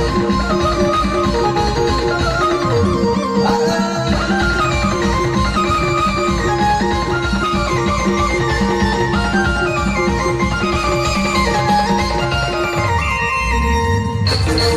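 Procession band playing loud music: dense drumming under a fast, stepping melody and a held droning note.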